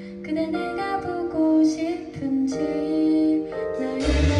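A woman singing live into a microphone with band accompaniment, her voice holding long sustained notes.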